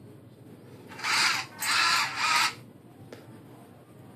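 Rover 5 tracked robot chassis's electric gear motors whirring in three short bursts, each about half a second long, as the tracks are driven back and forth by remote control.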